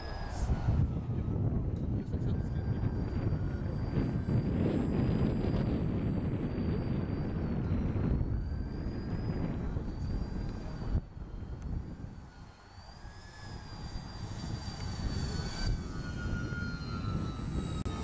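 Radio-controlled scale model Cessna 310 twin flying overhead, its motors giving a thin, wavering high whine over a steady low rumble. The sound fades about eleven seconds in, then builds again toward the end as the model comes in low to land.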